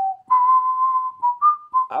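Someone whistling a short tune: one long held note, then a few short notes that step up and come back down.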